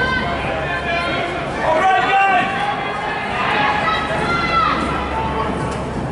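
Several people shouting to the runners, voices ringing in a large indoor track hall, loudest about two seconds in and again around four to five seconds in.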